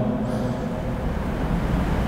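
Steady background noise with no speech: a low rumble under an even hiss.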